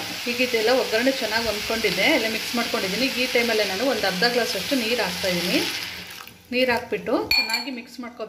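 A steel spoon stirring and scraping sprouted horse gram in an aluminium pot over a faint frying sizzle. The strokes come in quick succession, drop away briefly about six seconds in, then resume.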